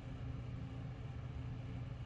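Steady low background hum with faint hiss, with no distinct events.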